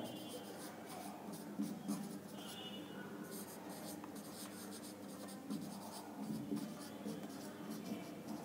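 Marker pen writing on a whiteboard: a quiet run of short scratchy strokes as words are written out.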